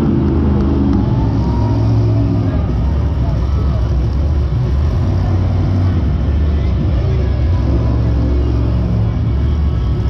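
Monster truck's supercharged V8 engine running loud and steady, a deep, even drone that hardly changes pitch.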